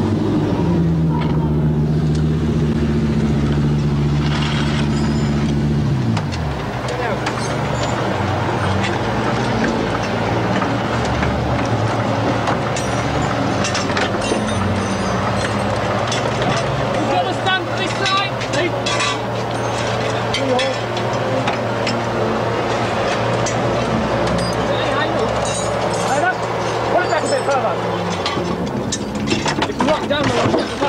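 Audi rally car's engine running steadily, its note falling away about six seconds in. After that a steady low hum continues under repeated metal clanks and clicks from tools and a trolley jack as the mechanics work on the car.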